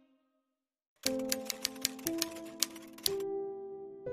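Typewriter keystroke sound effect, a quick irregular run of about a dozen sharp clicks starting about a second in, over short music notes. It gives way to a held musical chord near the end.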